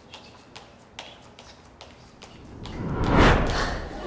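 Light, evenly paced taps of feet landing as a woman jumps up and down in place, about two or three a second. About three seconds in, a loud rushing whoosh swells up and dies away.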